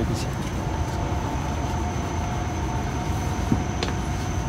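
Steady cabin noise inside a Hokuriku Shinkansen bullet train: an even low rumble and hiss with a faint steady whine.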